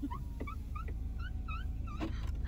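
A bird giving a quick series of short chirps, over a low steady rumble.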